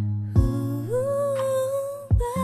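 A woman singing one long wordless held note that steps up in pitch about a second in, over a soft instrumental accompaniment with a low note struck near the start.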